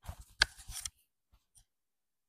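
Brief rustle of fabric with one sharp click as a hand brushes the clip-on microphone on a woman's clothing, followed by a couple of faint ticks.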